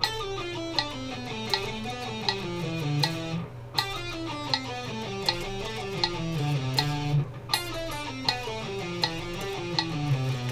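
Electric guitar playing a fast descending sequenced scale run in even notes, starting over three times, over a metronome clicking about every three-quarters of a second.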